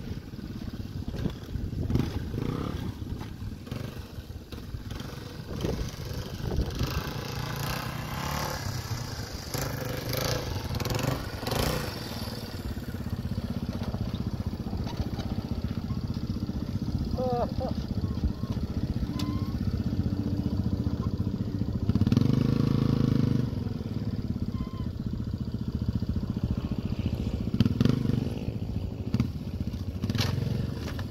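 Dual-sport motorcycle engine running at low speed and being revved in blips over rough dirt, with a longer, louder rev about three-quarters of the way through.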